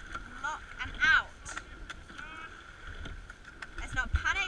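A rowing boat under way on the water, with a steady wash and low knocks, and several short, high squeals that bend in pitch, the loudest about a second in.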